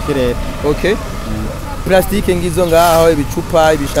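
Men talking in bursts over a steady low rumble.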